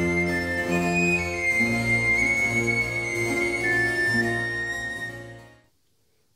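A sopranino recorder plays an ornamented high line over sustained low accompaniment. The line repeats and holds notes of a dominant seventh chord (F♯–A♯–C♯–E), leaning on the dissonant E, and the music fades out about half a second before the end.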